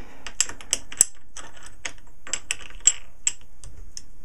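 Irregular light clicks and taps, a few a second, from a metal quick-release plate being handled and pressed into a Manfrotto tripod head's plastic platform. The sharpest clicks come about a second in and again near three seconds.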